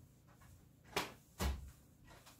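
Two sharp knocks about half a second apart, the second with a heavier, deeper thump.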